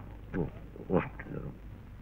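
A man's short, quiet grunts, two falling 'hm'-like sounds about half a second apart, over a low steady hum.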